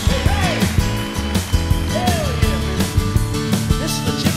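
Live southern rock band playing the instrumental opening of a song: drum kit keeping a steady beat under bass and electric guitars, with the lead guitar bending notes up and down about every two seconds.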